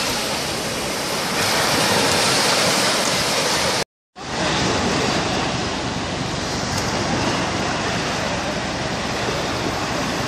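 Sea surf breaking and washing up on a sandy beach, a steady rush of water. The sound cuts out completely for a moment about four seconds in, then the surf carries on.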